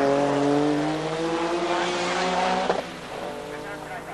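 Porsche 956 race car's twin-turbo flat-six engine running hard as the car pulls away through a corner, its pitch rising slowly. Near three seconds in the sound cuts off abruptly and a quieter, fading engine note follows.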